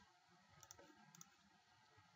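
Near silence with two faint computer-mouse clicks, each a quick double click, about half a second apart.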